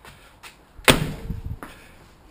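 A 1971 Ford Escort Mk1 car door being shut: one solid slam about a second in, with a short low rumble after it and a couple of light clicks either side.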